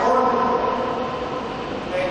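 A man's voice over a public-address system, smeared by echo in a large hall.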